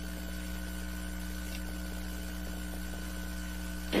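Steady electrical mains hum with a few faint steady higher tones alongside it, unchanging throughout.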